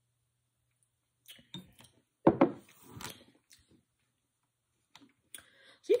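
Small mouth sounds of sipping and swallowing juice, then a drinking glass set down on a table with a knock a little over two seconds in, followed by a few softer clicks.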